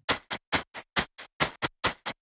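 Bit-crushed shaker loop played back solo through a lo-fi plugin set to a low sample rate and bit depth. It is a crackly, bright pattern of short shaker hits, about four a second.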